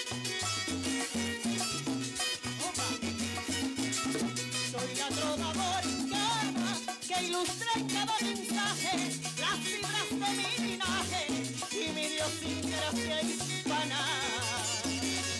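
A Puerto Rican música jíbara band plays an instrumental interlude between sung verses. A cuatro-led string melody runs over a walking bass line and steady hand percussion.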